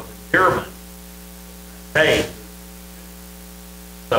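Steady electrical mains hum with a stack of overtones, broken twice by short bursts of a voice, about half a second in and again about two seconds in.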